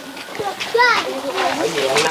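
Young children's voices chattering and calling out, with a high-pitched call about a second in.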